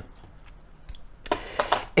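Light handling of pens in an open metal tin: a few short clicks and rustles in the second half, after a quiet first second.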